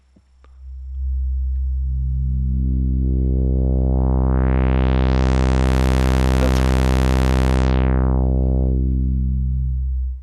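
Low sawtooth note from a GSE 101-VCO through the G-Storm Electro XaVCF filter (an OB-Xa-style AS3320 filter) in its 2-pole state-variable lowpass mode with no resonance. The cutoff is swept slowly open, so a dull buzz brightens over about four seconds, holds bright, then closes back to a dull buzz near the end.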